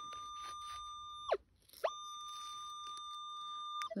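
Minelab Equinox 600 metal detector giving a steady high beep-tone that signals a buried target under the coil. About a third of the way in the tone slides down and cuts out. It slides back up half a second later and drops away again near the end.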